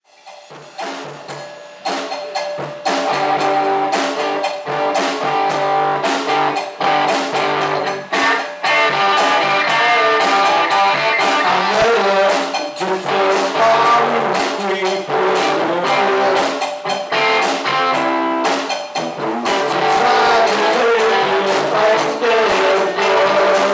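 Live classic rock band playing guitars and a drum kit, a rough live recording. The music comes in about a second in and is at full level from about three seconds in.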